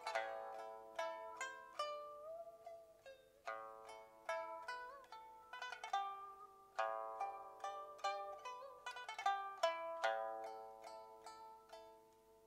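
Pipa played solo: a run of plucked notes with sharp attacks, some quick repeated plucks, and a few notes bent so they slide up in pitch as they ring.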